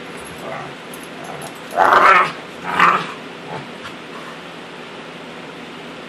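Two dogs play-wrestling, with two short, rough dog vocalizations about two and three seconds in and a few fainter ones around them.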